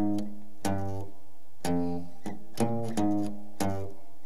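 Clean-toned semi-hollow electric guitar playing four chords, about one a second, each struck once and left to ring: a blues tag that descends from a B-flat root by a whole step and a half step to F.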